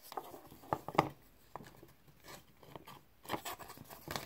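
Faint handling sounds of wooden craft sticks: a few light clicks and taps with soft rubbing and scuffing on the work surface.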